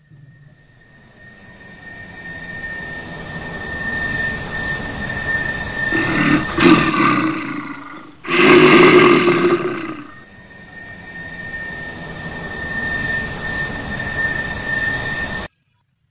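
Animal roar sound effect dubbed over the toy bear: a growling roar that swells up over the first few seconds, with two loud roars about six and eight seconds in, then cuts off abruptly near the end.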